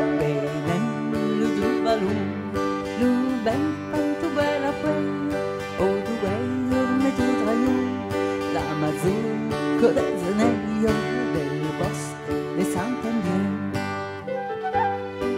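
Live folk band music: acoustic guitar and electronic keyboard playing a dance tune, with flute joining in at times.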